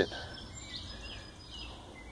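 Faint outdoor ambience: a steady low background rumble with a few short, thin, high-pitched bird chirps in the distance.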